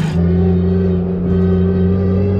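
Nissan Silvia S15's four-cylinder engine running at a steady speed, heard from inside the cabin as the car drives slowly. It is a loud, even drone that holds one pitch throughout.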